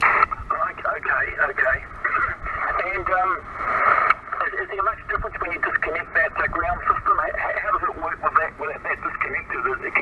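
A distant amateur station's voice received on 20 m single-sideband through a Yaesu FT-857D's speaker: thin, band-limited speech over a bed of static, a long-haul HF signal with a noticeable multipath echo.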